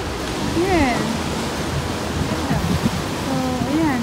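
Steady wash of ocean surf breaking on a sandstone rock shelf, with brief snatches of a voice about a second in and near the end.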